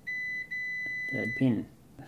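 Multimeter continuity beeper sounding a steady high beep while the probes bridge a connected pair of points on the ESC circuit board. It cuts out briefly about half a second in and stops after about a second and a half, when the probes lose contact.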